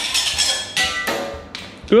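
Holy Stone HS190 micro drone crashing at top speed: a sudden knock as it hits, a second clattering strike with brief ringing under a second in, then the clatter dies away.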